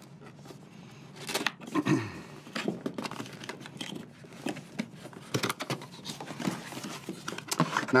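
Cardboard collector's box being opened by hand: scattered taps, scrapes and rustles as the flaps and packaging are worked loose.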